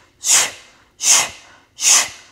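A woman's sharp, hissing breaths, three in two seconds at an even pace, in time with small pulsing kneeling push-ups.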